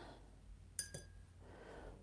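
A single light metallic clink about a second in, as a paintbrush touches the metal watercolour palette tin. It is followed by faint soft rubbing of the brush working paint in the palette.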